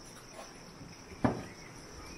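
Steady, high-pitched chirring of insects in the background, with one sharp knock a little over a second in.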